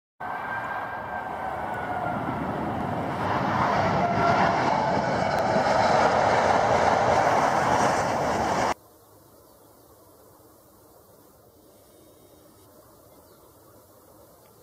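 Jet aircraft passing overhead: a loud rush with a slowly falling engine whine, growing louder, then cut off suddenly about eight and a half seconds in. After that only a faint, steady outdoor background remains.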